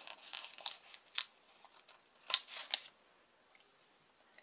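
Paper sticker sheets rustling and crinkling as planner stickers are handled, with a sharp crackle a little over two seconds in.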